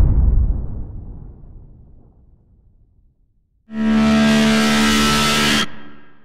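Intro sound effects: a deep whoosh fades out over about three seconds, then after a short silence a loud, steady synthesized chord with a hiss over it sounds for about two seconds and fades away near the end.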